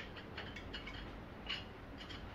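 Faint light metallic clicks of an airsoft outer barrel and its threaded extension piece being handled and turned, with one slightly sharper click about one and a half seconds in.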